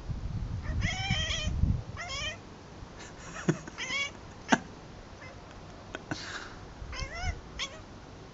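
Domestic cat chattering: short bursts of rapid, wavering chirps and trills with pauses between them, the chatter a cat makes while watching birds it cannot reach.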